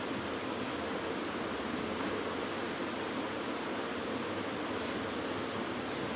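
Marker writing on a whiteboard, with one short high squeak of the marker tip near the end, over a steady background hiss.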